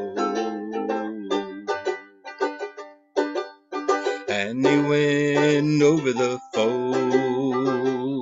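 Banjo-ukulele strummed with quick, short chords in a folk-song accompaniment. About halfway through, a man's singing voice holds a note for a second or two, then the strumming carries on alone.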